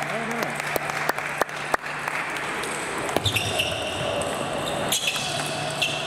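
Table tennis balls clicking on tables and bats in a large hall, as a scatter of sharp irregular knocks over the first two seconds over a steady hum. From about halfway through, a steady high-pitched tone sounds until the end.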